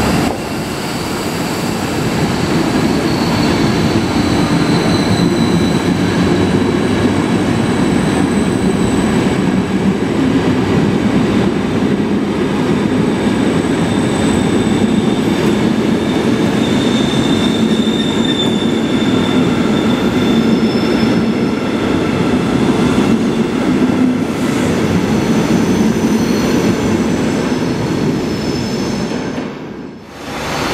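ÖBB night-train passenger coaches rolling steadily past on the track, with a continuous rumble and thin high wheel squeals that drift in pitch. The sound dips away at the very end.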